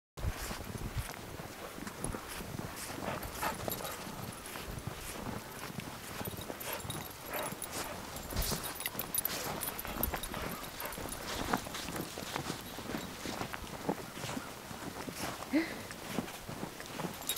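Footsteps of a walker and several leashed dogs crunching through snow, an irregular patter of soft steps.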